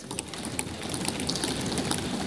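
Members of parliament thumping their desks in approval: a dense, continuous patter of many hand knocks on wooden desks, starting suddenly.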